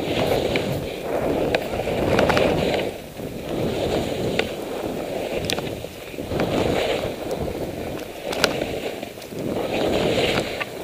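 Skis scraping and hissing over snow through a run of linked turns, the noise swelling with each turn roughly every second and a half, with wind on the microphone and a few sharp clicks.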